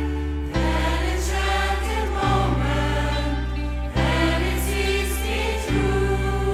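Mixed gospel choir singing long held chords over a band with a strong bass, the harmony shifting about every one and a half to two seconds.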